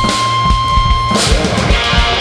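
Live rock band playing an upbeat pop-punk instrumental passage: electric guitars over a drum kit with steady kick-drum beats. A high held note cuts off a little past halfway through.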